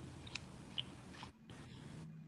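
Faint room tone over a video-call line, with a few soft small clicks in the first second and the sound cutting out completely for a moment just after the halfway point.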